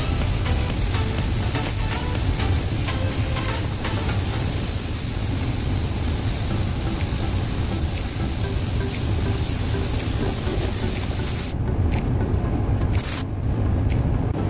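Compressed-air paint spray gun hissing steadily as it sprays. The hiss stops about three-quarters of the way through, then comes back in one short burst near the end. A steady low rumble and background music run underneath.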